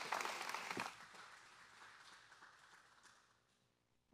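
Congregation applauding, the clapping dying away after about a second and trailing off to silence.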